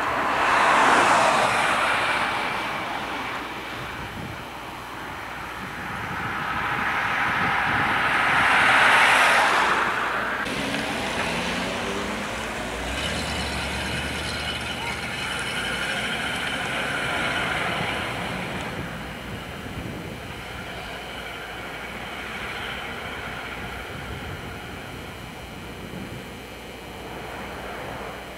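Road traffic: vehicles pass by, their rushing noise swelling and fading about a second in and again around nine seconds in, followed by a steadier, quieter road noise.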